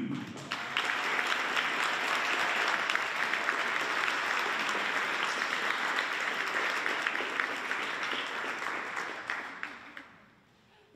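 Audience applauding, starting about half a second in and fading out near the end.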